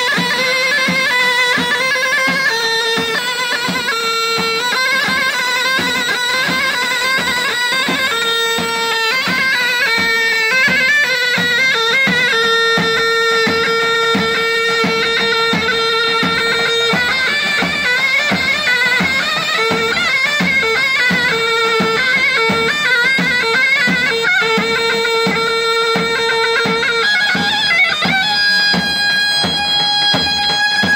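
Live wedding dance music: a reedy, bagpipe-like wind melody over a held drone note and a steady drum beat. About two seconds before the end the melody gives way to long held notes.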